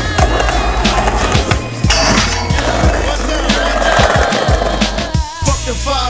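Hip-hop music track with a steady bass line, mixed with the sounds of a skateboard on concrete: wheels rolling and sharp clacks of the board popping and landing, at irregular intervals. The sound changes briefly a little after five seconds.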